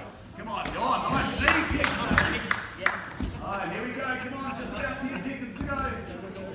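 Punches and kicks hitting handheld foam strike pads: several sharp hits in the first half, mixed with voices.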